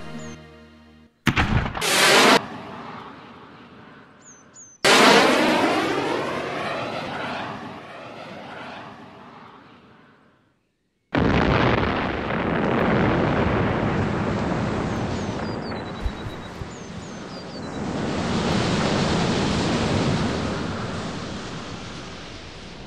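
A series of explosions, each starting suddenly. A sharp blast comes about a second in, and a bigger one near five seconds dies away over several seconds. After a brief silence, another blast runs on as a long, swelling rumble.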